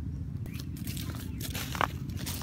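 Bare feet stepping through a thick layer of dry, dead leaves and plant stems, crunching and crackling. The steps start about half a second in.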